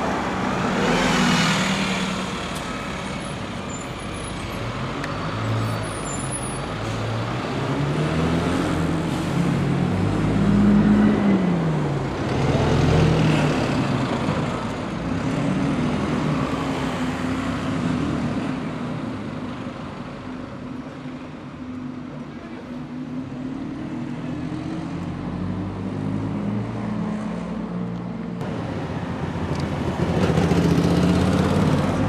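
Single-deck diesel buses moving in street traffic, their engine note rising and falling as they pull away and change gear, loudest about ten to thirteen seconds in, over general traffic noise.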